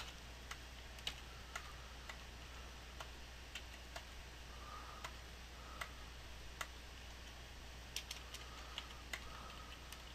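Faint computer keyboard keystrokes while form fields are being filled in: single sharp clicks spaced irregularly, roughly one every half second to a second, with a pair close together near the end.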